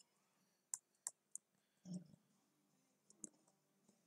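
Near silence broken by four faint, short clicks of computer input: three about a third of a second apart, starting under a second in, and one more near the end. A soft low sound comes about two seconds in.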